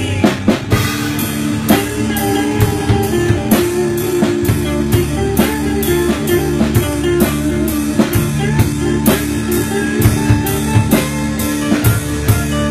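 Rock music: a drum kit keeps a steady beat of about two to three strikes a second over sustained guitar and bass notes.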